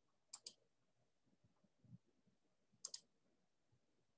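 Two faint double-clicks of a computer mouse, one about half a second in and one near three seconds in, over near silence.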